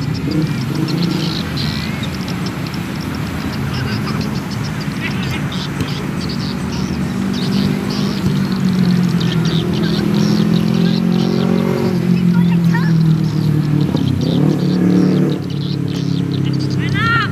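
A steady engine hum runs throughout, shifting slightly in pitch near the end, with shouting voices over it.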